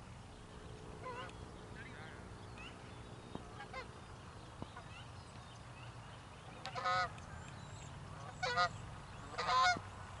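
Geese honking: faint calls in the first few seconds, then three loud honks in the last three seconds.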